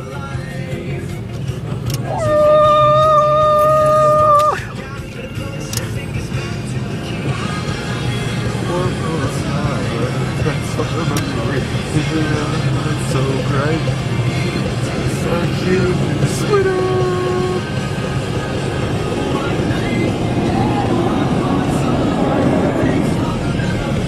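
Music with a long held note about two seconds in, over the steady rush of a car wash's air dryer blowing on the car, heard from inside the cabin.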